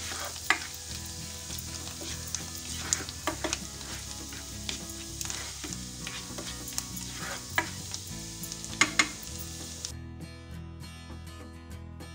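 Chopped garlic sizzling in melted butter in a nonstick wok, with the scrapes and taps of a spatula stirring it. The sizzle cuts off about two seconds before the end, leaving soft background music.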